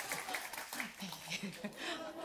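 Scattered audience applause tapering off, with faint voices underneath.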